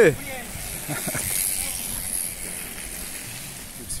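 Mountain bikes rolling past on a gravel track: a steady noisy rush of tyres on loose stones, swelling slightly in the middle.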